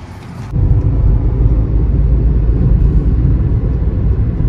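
Steady low rumble of a car driving, heard from inside the cabin: engine and road noise. It starts suddenly about half a second in.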